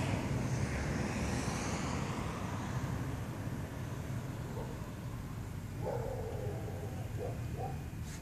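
Outdoor background: a steady low rumble like distant road traffic, with a few faint short calls about six seconds in.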